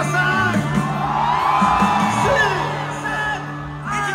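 Live rock band playing through the PA while a large crowd sings along loudly, with whoops and yells from the audience, as heard on a phone recording in the crowd.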